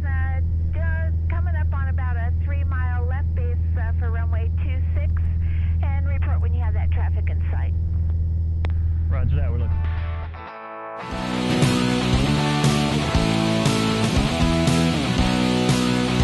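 Steady low drone of a light plane's piston engine and propeller heard inside the cockpit, with voices talking over it. About ten seconds in it cuts off and rock music with electric guitar and a steady beat takes over.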